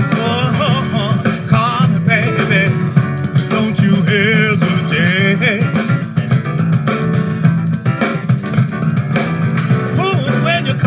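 A live band plays: drum kit, electric bass and a Kawai piano over a steady bass line, with a melodic lead line whose pitch bends and wavers.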